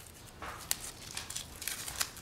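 Faint, intermittent rustling and crinkling of a paper wrap being handled and peeled from an orchid's stems, with one short sharp tick under a second in.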